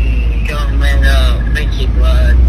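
Steady low rumble of a car's interior under soft, indistinct talk.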